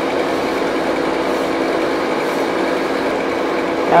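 Steady mechanical hum with several held tones over an even hiss, typical of the water pump that drives the current through a cold-water immersion tank.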